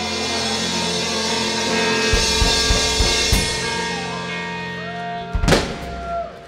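Live rock band of electric guitar, electric bass and drum kit holding the song's final chord while the drummer plays a fill of heavy drum strokes and crashing cymbals. Near the end the band comes down together on one last big hit that rings out as the song ends.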